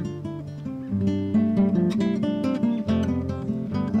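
Background music on acoustic guitar: plucked notes and strums ringing on over each other at a steady, even pace.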